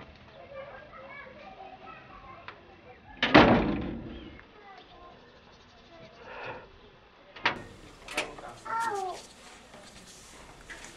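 A metal-framed glass front door banging shut about three seconds in, with faint voices in the background. Near the end come two sharp clicks and a brief call.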